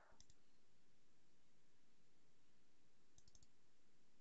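Faint computer mouse clicks over near-silent room tone: a click just after the start, then a quick double click about three seconds in.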